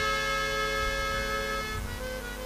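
Harmonium playing a held chord of steady reed notes that shifts to new notes near the end.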